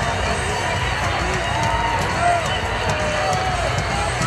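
Arena crowd noise: a steady din of many voices talking and calling out at once.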